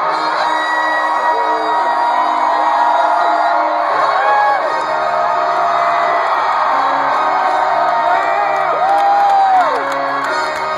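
A concert crowd in an arena cheering and screaming over sustained intro music from the PA. Several long whoops rise and fall in pitch, about four seconds in and again near the end.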